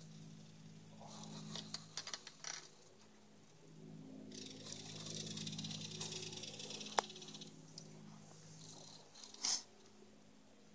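Faint, steady low hum with a few soft clicks early on, a few seconds of hiss in the middle, and a single sharp click about seven seconds in.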